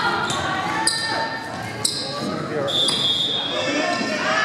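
Volleyball players' voices calling out, echoing in a large gymnasium, with short high squeaks and sharp knocks from shoes and the ball on the hardwood floor, one about a second in, another about two seconds in, and a longer squeak near three seconds.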